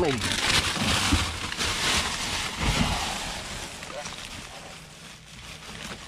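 Plastic trash bags crinkling and rustling as hands rummage through them, loudest in the first few seconds and fading toward the end.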